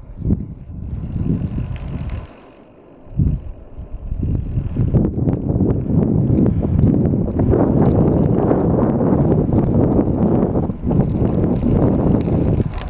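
Wind buffeting the microphone of a camera moving along an asphalt lane, a low, gusty noise. It drops away briefly about two seconds in, then comes back louder and stays.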